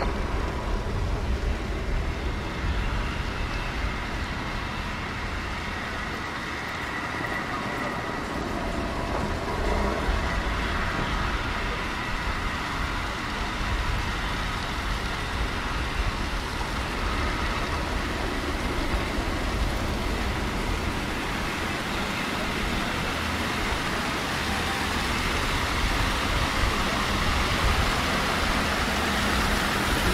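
Steady city street ambience: a continuous hum and rumble of road traffic, with no distinct single events.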